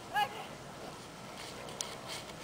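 A yellow Labrador-type dog whining once, a short high-pitched rise and fall about a fifth of a second in, over faint outdoor noise, with a sharp click near the end.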